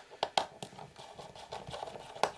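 Plastic casing of a JVC GX-N7S video camera being pulled apart by hand: a handful of sharp plastic clicks and snaps, several in the first moment and a couple more near the end, with light handling rustle between.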